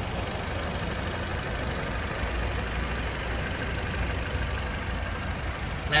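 Wuling Cortez engine idling steadily, heard up close in the open engine bay.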